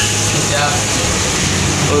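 Gas wok burner running: a steady rushing noise with a low hum underneath.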